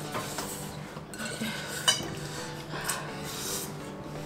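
Metal forks clinking and scraping against glass bowls of noodles during eating, with a sharp clink about two seconds in.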